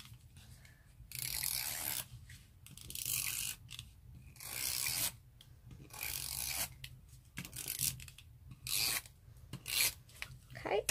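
Handheld tape runner being drawn across card stock in repeated strokes, about one a second, each a short rasping, ratcheting rub as the adhesive tape feeds onto the card.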